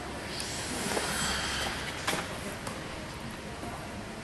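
Figure-skate blades hissing over the ice as the skater glides into position, with a few small sharp knocks, in the echo of an ice-rink hall.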